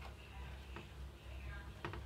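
Quiet room with a steady low hum and a few faint soft taps as raw eggplant slices are laid on a metal baking tray.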